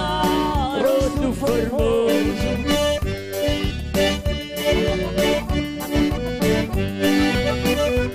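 A live band playing an upbeat accordion-led dance tune: a piano accordion carries the melody over an electronic keyboard and a steady beat. A man's voice sings through the first couple of seconds.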